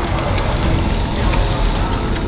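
Background music over a steady rushing hiss from the whole-body cryotherapy chamber's nitrogen vapour.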